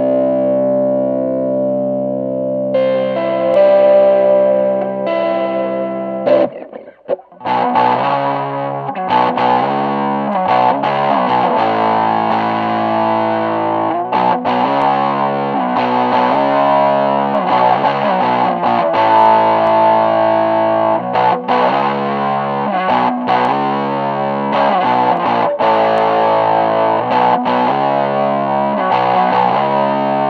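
Overdriven electric guitar played through a Q-filter (fixed 'cocked wah' bandpass) pedal, with an OCD-style overdrive in the chain. A held chord rings for about six seconds, then after a brief break comes rhythmic chord playing with short stops, the tone pinched into the mids by the filter's peak.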